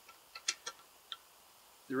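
Four light metallic clicks within about a second as a factory shift fork, its rod and third gear are worked by hand on a motorcycle transmission shaft in an open aluminium case. The stock fork is binding against the larger wide-ratio fifth gear, so the assembly won't turn.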